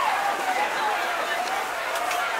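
Indistinct voices and steady background hubbub of a crowded market, with one faint voice carrying over it in the first second or so.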